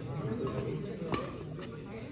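Badminton rackets striking a shuttlecock in a quick doubles exchange: three sharp hits about half a second apart, the loudest a little past halfway, over steady background talk from people around the court.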